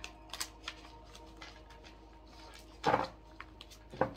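Tarot cards being handled and gathered back into the deck: a few light clicks and taps of cards, then one louder brief rustle and knock as the deck is squared, about three seconds in.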